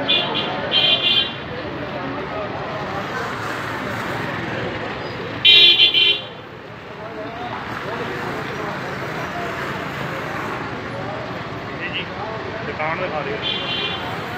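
Vehicle horn honking over street noise and voices: two short beeps at the start, a louder, longer honk about five and a half seconds in, and another short beep near the end.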